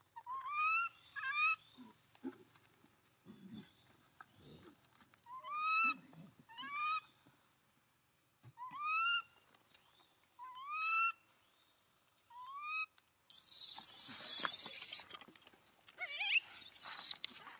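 A young macaque giving a series of short, rising coo calls, about eight of them and several in pairs. Near the end comes a loud, harsh, noisy burst lasting about two seconds.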